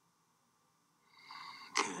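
Silence, then about a second in a woman draws a short, soft breath before she speaks again.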